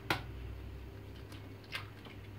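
A few light clicks and taps from gloved hands handling a plastic mixing bowl of liquid batter, the loudest near the end, over a low steady hum.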